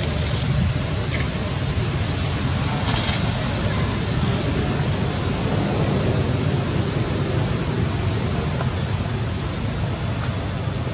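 Steady wind rumbling on the microphone, with brief dry-leaf rustles from scuffling macaques near the start and about three seconds in.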